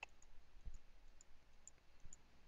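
Near silence with a faint computer-mouse click at the start and a soft low bump about two-thirds of a second in.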